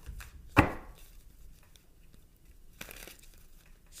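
Tarot cards being handled on a table: one sharp knock a little over half a second in, then a few faint taps and rustles.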